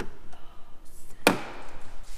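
A single sharp knock, a little past the middle, with a short ring after it.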